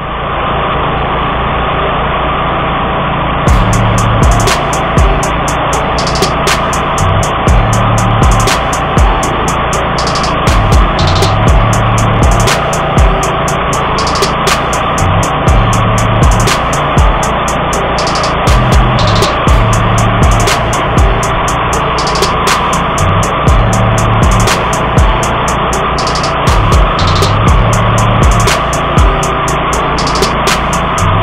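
A 1999 DR field and brush mower's engine running steadily as it cuts overgrown field grass, with background music carrying a steady beat over it from a few seconds in.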